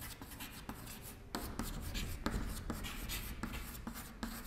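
Chalk writing on a chalkboard: a run of short scratching strokes and light taps as a word is written out.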